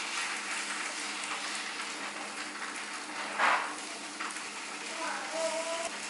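Tofu slices frying in oil in a nonstick pan, a steady sizzle, with a brief louder burst of sizzle about three and a half seconds in as slices are turned over with a spatula.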